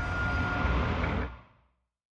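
Tail of a cinematic logo-reveal sound effect: a low rumble with a faint steady ringing tone, fading out and ending about a second and a half in.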